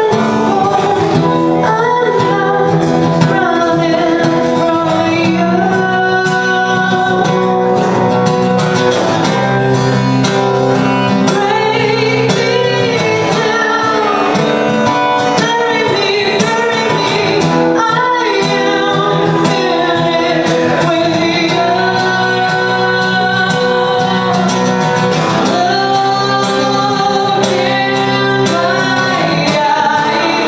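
A woman singing with strummed acoustic guitar accompaniment, performed live.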